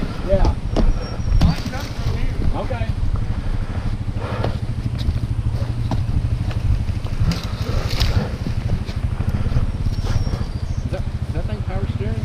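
Off-road dirt bike engine running steadily at low revs, with scattered knocks.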